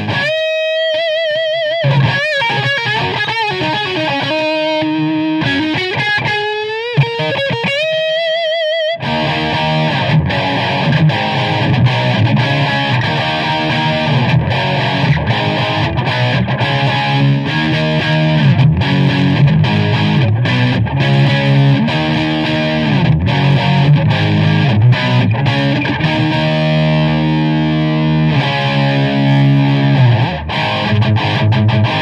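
1989 Gibson Les Paul Custom electric guitar with Bill Lawrence "The Original" humbuckers, played through an overdriven amp. For about the first nine seconds it plays a sustained single-note lead line with string bends and wide vibrato, then switches to heavier chord riffing for the rest.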